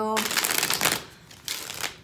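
A deck of tarot cards being shuffled: a dense run of quick card clicks for most of the first second, a short lull, then a second shorter burst near the end.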